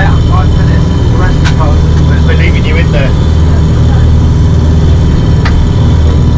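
A dive boat's inboard engine running steadily under way at nearly ten knots, heard inside the wheelhouse as a loud, even low drone.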